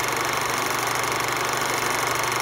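Film projector sound effect: a steady mechanical whirring with a fast, even clatter.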